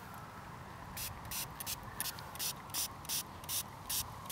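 Small pump-spray bottle spritzing liquid onto a freshly dug, dirt-covered coin to rinse it. After about a second, a rapid run of short sprays, two or three a second.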